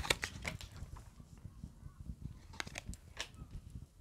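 Tarot cards being handled and shuffled in the hands: a few faint, short clicks and rustles, in a scattered cluster near the start and a couple more about two and a half to three seconds in.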